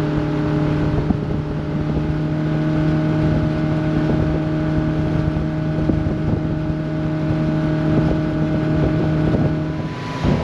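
A Baja speedboat's V8 engine runs at a steady high speed, holding about 48 mph with no change in pitch. Wind and rushing water noise lie thick under the engine tone.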